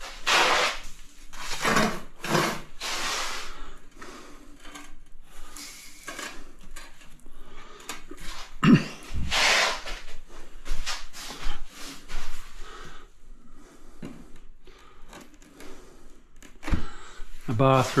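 Tiling work: a trowel scraping and spreading a wet mortar bed in repeated strokes, with a few short dull knocks.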